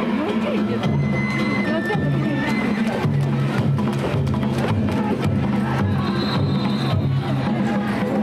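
Danjiri float's festival music: taiko drums and small hand gongs (kane) beating a busy, steady rhythm, over the chatter of a crowd.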